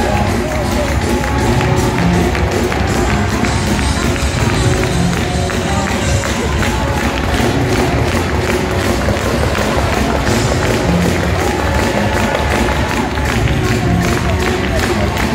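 Loud live church praise music with a steady driving drum beat, with the congregation's voices over it.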